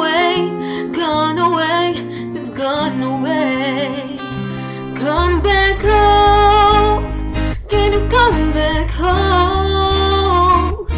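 Song cover: a solo voice singing a melody over an unplugged backing of acoustic guitar, with a deep bass part entering about halfway through.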